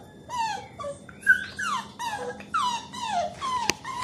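Beagle puppy whining: a rapid string of short, high-pitched cries, most falling in pitch. One sharp click near the end.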